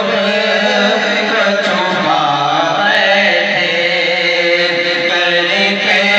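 Male voices singing a naat, an Urdu devotional song, into handheld microphones in a chant-like style over a steady low drone. About halfway through, the melody glides up into a long held note.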